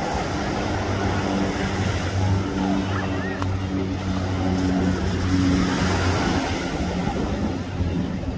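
A boat engine running steady, its pitch shifting a little now and then, over small waves washing onto the sand and wind on the microphone.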